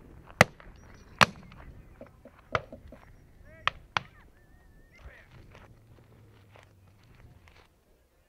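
Shotgun shots on a driven grouse drive: two loud shots within the first second and a half, a third about a second later, then a quick pair about a third of a second apart, as from both barrels.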